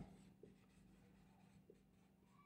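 Near silence: a marker pen writing on a whiteboard, very faint, with a couple of soft ticks from its strokes over a low steady hum.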